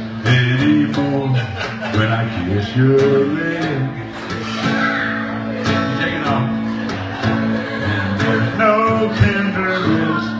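Live acoustic guitar strummed steadily, with a male voice singing over it.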